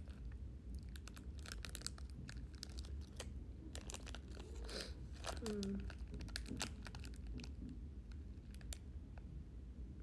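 Crinkly plastic snack wrapper being handled and pulled open, in scattered clusters of sharp crackles.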